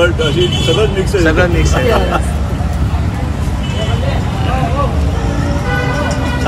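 Steady low rumble of street traffic, with people's voices talking over it in short stretches.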